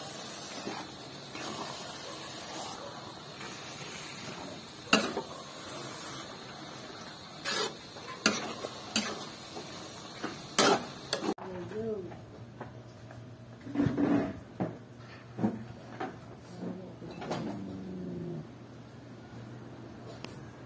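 A metal spoon stirs and scrapes thick grated santol in coconut milk inside an aluminium pot, knocking sharply against the pot several times. After about eleven seconds the stirring stops, and a low steady hum with a few faint short pitched sounds is left.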